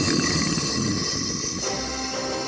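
A loud explosion sound effect for the planet blowing apart bursts in just before and slowly fades away. Dramatic music swells in underneath about one and a half seconds in.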